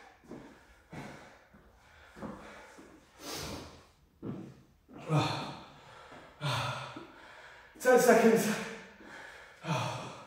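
A man breathing hard, recovering after a weight-training set pushed to failure: a heavy exhale about once a second, some of them voiced like sighs, the loudest a little before the end.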